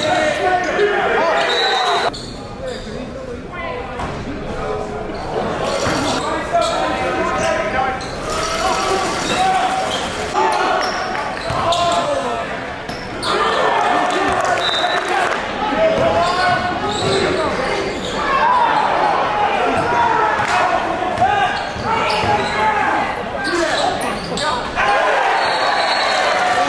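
Live sound of a basketball game in a gymnasium: a basketball bouncing on the hardwood court among players' and spectators' voices, all echoing in the large hall.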